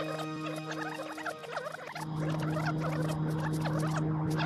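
Time-travel sound effect for going in reverse: a steady low electronic hum under a dense flurry of rapid, high squeaky chirps. The hum drops away briefly about a second and a half in and comes back louder about two seconds in.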